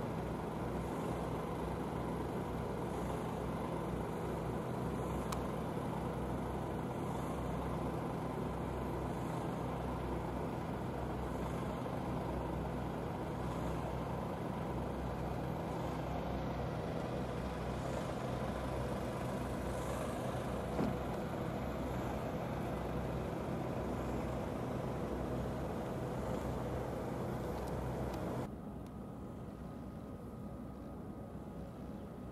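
A vehicle engine idling steadily, a low even hum under a constant hiss. The sound drops away suddenly near the end.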